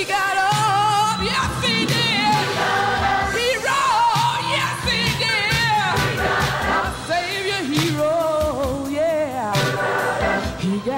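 Live gospel music: a woman's voice singing with wide vibrato over accompaniment.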